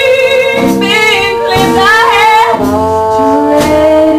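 A small traditional jazz band playing live: a woman singing over trumpet, trombone, sousaphone, guitar and drums, with a note held under the melody.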